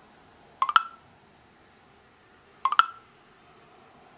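Phone speaker playing the TellMe voice app's processing cue: a quick cluster of electronic clicks ending in a short bright tone, heard twice about two seconds apart. It signals that the spoken request is still being processed.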